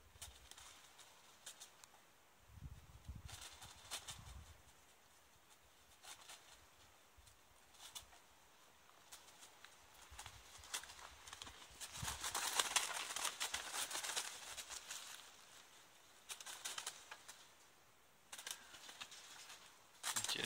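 Crows flapping their wings inside a chicken-wire cage trap, wings and feet brushing the wire mesh, in scattered bouts with the longest and loudest stretch about twelve to fifteen seconds in.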